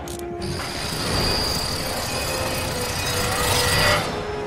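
Rapid metallic ratcheting and clicking, a film sound effect of a metal mechanism, with a steady high whine setting in about half a second in and building slightly toward the end.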